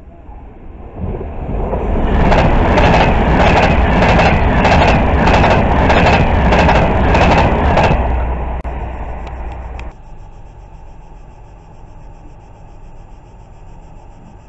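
A train passing at speed: a rush that builds about a second in, then a loud stretch of about six seconds with a regular clickety-clack of wheels over rail joints about twice a second, before it drops away near ten seconds.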